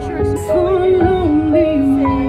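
A woman singing live into a handheld microphone over backing music, amplified through the stage sound system. Her voice wavers and bends through held notes.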